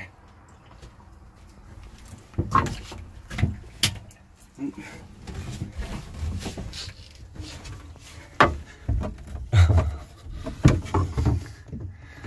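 Irregular knocks and thumps of a person shifting about inside a small wooden mini boat, a few early on and a cluster in the last few seconds.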